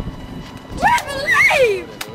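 A boy yelling in a wavering cry, its pitch swinging up and down for about a second, with a single sharp crack partway through.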